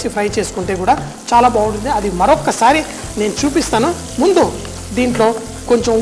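Chopped onions frying in oil in a nonstick kadai, sizzling while they are stirred with a wooden spatula, under a man talking steadily.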